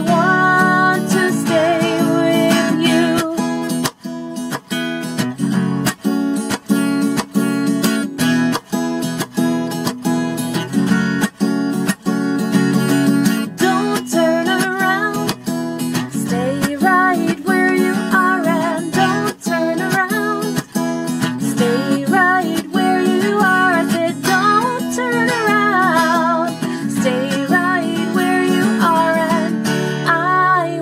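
Acoustic guitar strummed steadily, with a sung note held at the start and a wavering melody line over the chords from about halfway through.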